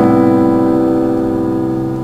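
C. Bechstein grand piano: a full chord struck just before, ringing on and slowly fading in the slow movement of a viola sonata, its bass notes released about three quarters of the way through.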